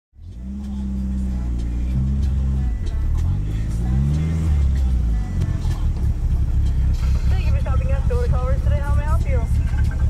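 A car engine running at low revs, its low drone rising and falling in the first few seconds, then settling into an idle with a rapid throb. A voice speaks briefly in the last few seconds.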